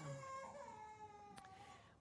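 A baby faintly whimpering, one drawn-out, thin cry that drops in pitch about halfway through, with a faint click near the end.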